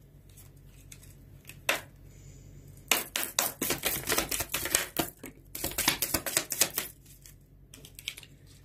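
A deck of tarot cards being shuffled by hand: quiet handling with a single click at first, then a quick run of papery card clicks and flicks from about three seconds in until near the end.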